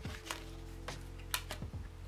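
Soft background music with steady held notes, over which come a few short, light clicks and taps from tarot cards being handled and set down, the sharpest a little past halfway through.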